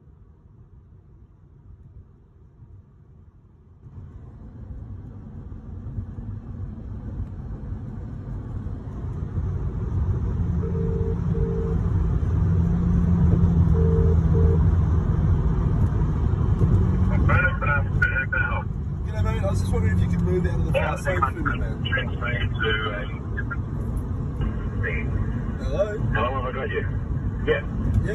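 Car cabin road and engine noise, growing louder from a few seconds in. A phone's ringback tone sounds twice in a double-ring pattern, an outgoing call ringing on speaker, and voices on the call follow from a bit past halfway.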